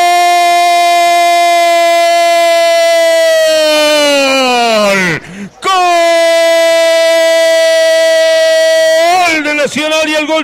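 A radio football commentator's long drawn-out goal cry, "Gooool!", held on one high pitch for about four seconds before the voice sags and drops away. After a quick breath just past halfway, he holds a second long cry, which breaks into fast speech near the end.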